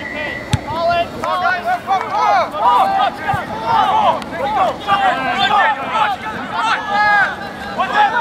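Many voices of rugby players and sideline spectators shouting and calling out over one another, no words clear. A single sharp knock about half a second in is the boot striking the ball on the drop-kick restart.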